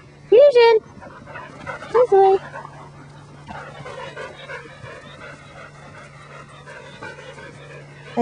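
A Border Collie barking: one loud high bark about half a second in and two short barks around two seconds, followed by a lower, even rustling noise.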